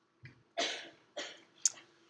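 A man coughing in a short run of three, the middle cough the longest, followed near the end by a single sharp click.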